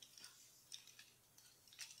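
Near silence with a few faint clicks of plastic toy parts being handled: a Transformers Titans Return Megatron figure's arm being unclipped and rotated 180 degrees.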